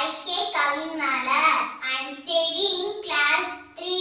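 A young girl singing a song on her own, without accompaniment, in short phrases with held notes.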